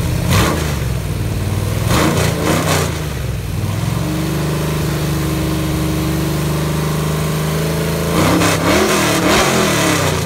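Chevy 355 cubic-inch small-block V8 with a performance cam, running on an engine stand through open exhaust tubes, blipped up and down in short revs, held steady at a raised speed for a few seconds, then revved in quick blips again near the end.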